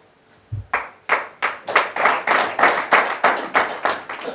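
Audience clapping in a steady, even rhythm of about four claps a second, starting about half a second in.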